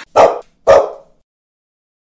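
A bulldog puppy barking twice in quick succession, two short loud barks about half a second apart.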